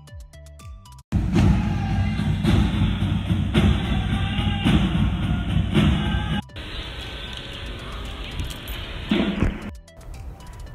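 About a second of clean added background music, then a hard cut to a school band playing, recorded live on a phone, with a beat about once a second. Near the middle it cuts to the band heard more quietly outdoors, swelling briefly near the end.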